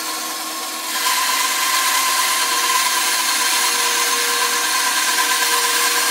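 Bandsaw cutting through a thick zebrawood blank: steady motor hum with the hiss of the blade in the wood, which grows louder about a second in and then holds steady.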